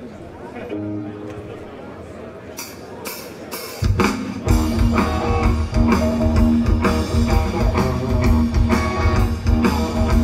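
A live rock band starting a song: a brief held note, then about four sharp count-in clicks, and the full band of drums, electric guitars and bass guitar comes in loud about four seconds in.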